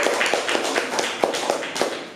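A small group of people clapping, irregular claps that thin out and fade toward the end.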